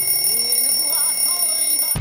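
Alarm clock sounding one steady, shrill electronic tone that cuts off suddenly at the end.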